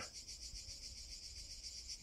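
Faint, steady chirping of insects in a high, rapid, even pulsing, with a little low rumble underneath.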